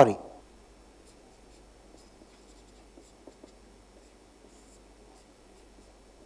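Felt-tip marker writing on paper, faint scratching strokes.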